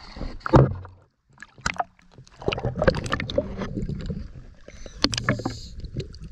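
Water splashing and sloshing against a camera held at the surface as it dips under, in irregular noisy bursts with a loud splash about half a second in and a brief dropout just after a second.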